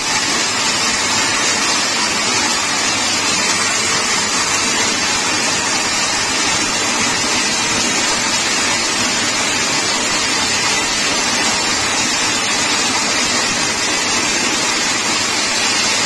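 Toroidal transformer winding machine running with a steady, even whir as its shuttle ring spins through the core, wrapping the toroid in white tape.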